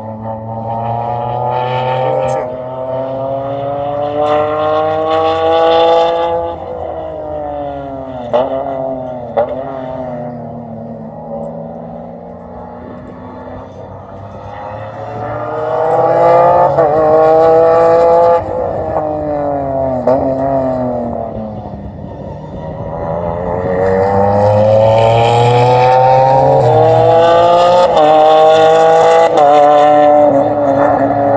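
Race car engine heard from trackside, revving up through the gears with a sudden drop in pitch at each upshift, backing off and falling in pitch, then accelerating hard again, louder toward the end.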